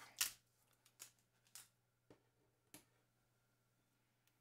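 Near silence broken by about five faint, short clicks and crinkles, the loudest just after the start: fingers peeling the protective plastic film off the back of a Fitbit Luxe fitness tracker.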